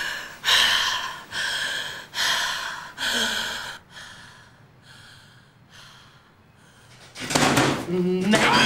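A woman in labour breathing hard through her mouth: five loud, quick, heavy breaths in a row, then softer, slower breaths. A loud, sudden sound comes near the end.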